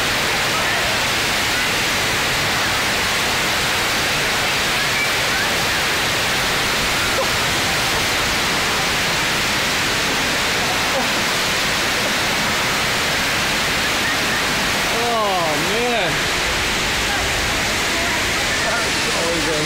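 Steady loud rush of water pumped up the FlowRider wave simulator's surface. About fifteen seconds in, a person's voice calls out briefly over it.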